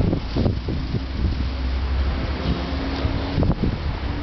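Wind buffeting the microphone of a handheld camera: a steady low rumble with a few short knocks, the loudest near the start and again near the end.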